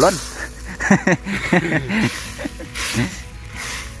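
A man laughing in short, broken bursts, with a few breathy exhalations near the end.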